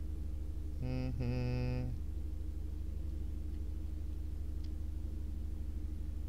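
A man's drawn-out, level-pitched "ummm" about a second in, held for about a second, over a steady low hum.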